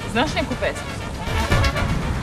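Brass band music with deep drum beats, and a person's voice briefly asking a question near the start.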